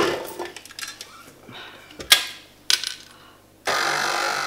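Sharp metallic clinks of the stainless steel bowl and flat paddle being fitted to a KitchenAid Artisan stand mixer, the strongest about two seconds in and another just under a second later. About three and a half seconds in, the mixer's motor starts and runs steadily.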